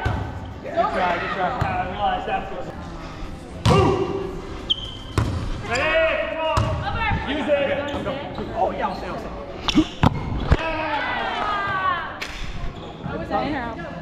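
A volleyball being served and hit back and forth in a rally: a series of sharp smacks, several seconds apart with a quick cluster of three about two-thirds through, echoing in a large gym hall. Players' voices call out between the hits.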